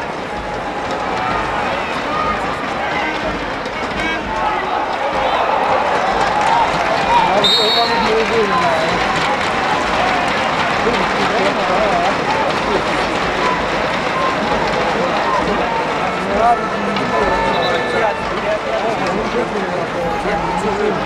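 Stadium crowd noise: many spectators' voices talking and calling at once. A short, high whistle sounds about seven and a half seconds in.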